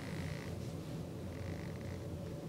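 Quiet room tone: a steady low hum with no distinct events.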